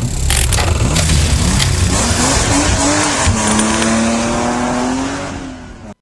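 Car engine sound effect for a show ident: a few sharp hits, then an engine revving up and down before holding a steady high note, over a hiss of tyre and road noise, fading out near the end.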